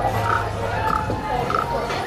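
Nightlife street noise: music from bars with a steady bass line, mixed with crowd voices, and a short higher sound recurring about every half second.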